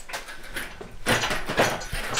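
Scraping and knocking of metal as a BMW M62 V8 engine and its gearbox, hanging from an engine crane on chains, are pushed into position by hand. The noise is loudest in the second half.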